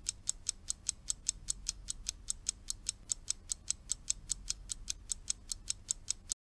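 Rapid, even clock-like ticking, about five ticks a second, over a faint low hum: a timer sound marking the pause for the learner to repeat the lines.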